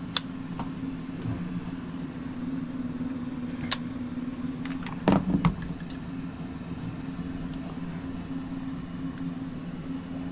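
Steady hum of the indoor blower in a Ruud Achiever furnace running, with a few light clicks and a louder clatter about five seconds in as a meter and tools are handled.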